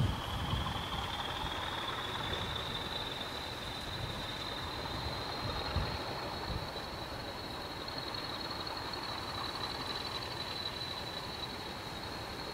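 Diesel locomotive approaching at low speed, its engine running with a high whine that rises slowly in pitch as it draws nearer. A few low thumps come near the start and about halfway through.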